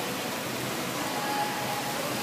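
Steady, even hiss of background noise, with a few faint brief tones in it.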